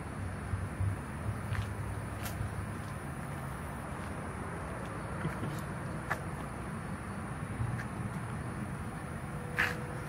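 Steady low outdoor background rumble, like distant traffic, with a few faint clicks scattered through it.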